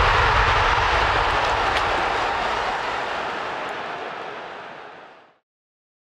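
Rushing whoosh effect of a logo sting, a steady noise that fades away slowly over about five seconds until it is gone.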